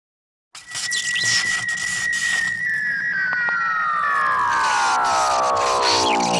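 Channel-intro sound effect: a high whistling tone holds steady, then from about two and a half seconds in glides steadily downward in pitch, over a hissing, crackling noise.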